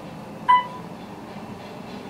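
A single short elevator chime, a clear ding about half a second in, over the steady hum of the moving elevator cab.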